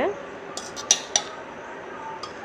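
A steel spoon clinking and scraping against metal cookware while scooping cooked horse gram from the pot. There are four or five sharp clinks in quick succession, about half a second to a second in.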